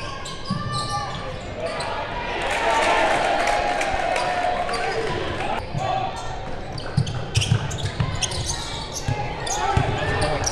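Basketball game in a gym: spectators' voices swell about two seconds in and hold for a few seconds, then a basketball dribbles on the hardwood floor in a quick run of thuds, about two or three a second, near the end.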